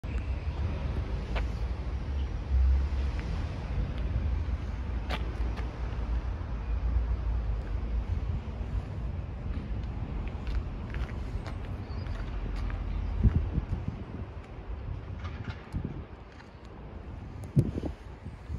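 Steady low outdoor rumble, heaviest in the bass, with a few light clicks and short thumps, the sharpest near the end.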